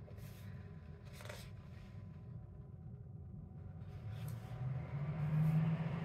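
A home heating system kicking on: a low hum that swells about four seconds in. Paper rustles of coloring-book pages being turned sound a few times over it.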